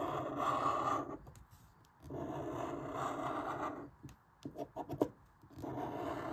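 Scratch-off lottery ticket being scraped, the coating rubbed off in strokes. It comes in three stretches with short pauses between them.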